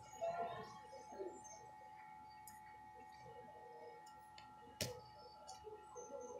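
Faint room sound with a steady high electrical whine, faint background voices early on, and a single sharp click near the end.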